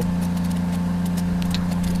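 Steady motor hum at one constant low pitch, as from shrimp-pond aeration machinery running.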